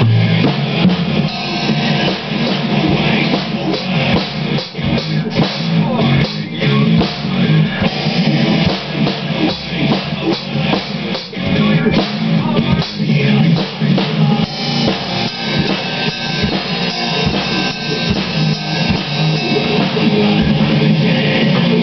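Yamaha acoustic drum kit played along with a hard rock track that has electric guitar, with a steady run of kick, snare and cymbal hits.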